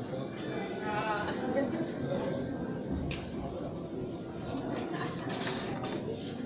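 Indistinct background voices and music, with a sharp click just after the middle.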